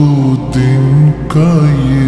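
Slowed, reverb-heavy naat: a voice holding and bending long, wordless notes between lines of the lyrics, over a low steady hum.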